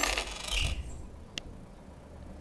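A brief soft thud about half a second in, then a single sharp click about a second and a half in.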